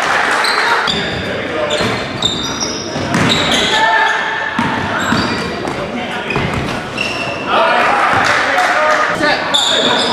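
Live sound of a basketball game in a large gym: the ball bouncing on the hardwood, short high squeaks of sneakers and a steady din of players' and spectators' voices echoing in the hall. The voices get louder about three-quarters of the way through.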